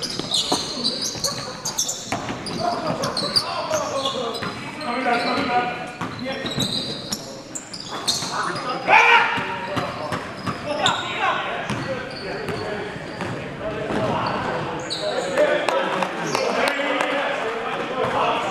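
Indoor basketball game: a basketball bouncing on a hardwood floor, sneakers squeaking, and players calling out, all echoing in a large gym.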